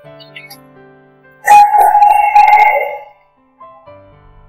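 Soft background music of held keyboard notes. About one and a half seconds in, a loud sudden sound cuts in, holds for about a second and a half, then fades out.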